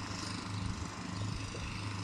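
A distant engine running steadily, a low hum under the open-air background noise.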